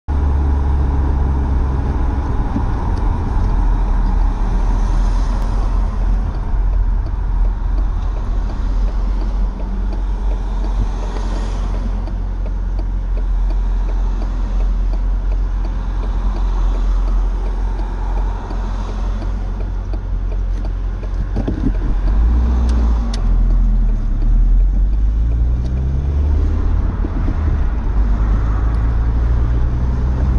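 Car engine running with low road rumble, heard from inside the cabin while driving in traffic; the engine pitch rises a few times past the middle as the car accelerates.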